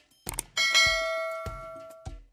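Subscribe-button sound effect: a mouse click, then a bell chime about half a second in, ringing with several pitches and fading away.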